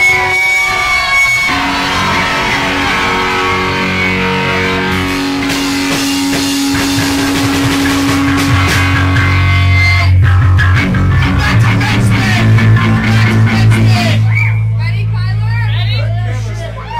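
A live rock band's amplified electric guitars ring out long sustained notes, with heavier low bass notes swelling in about ten seconds in.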